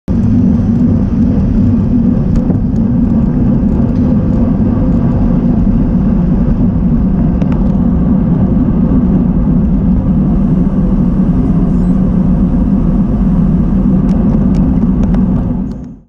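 Wind buffeting a helmet camera's microphone as the bike rides along, a loud steady low rumble with a few faint clicks; it cuts off suddenly at the end.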